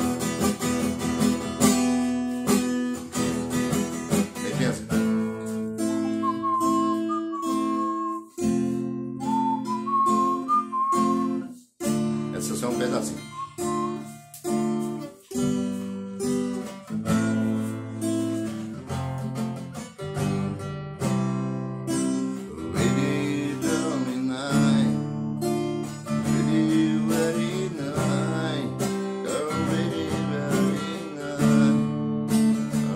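Nylon-string acoustic guitar played by hand, picked notes and strummed chords of a rock song, with a couple of brief breaks about a third of the way in.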